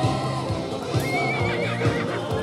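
Background music with a steady beat, and about a second in a horse whinnies, a wavering call lasting just under a second.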